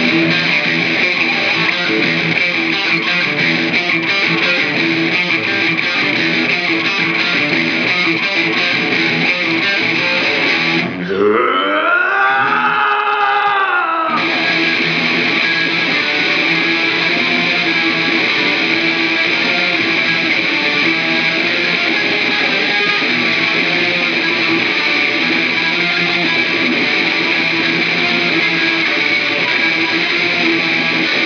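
Distorted electric guitar played solo, without drums or bass, in dense continuous riffing. About eleven seconds in the riffing drops away for three seconds to one sustained note that bends up in pitch and back down, then the riffing resumes.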